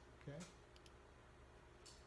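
Near silence in a room, with a few faint clicks from a computer key being pressed to advance the presentation slide.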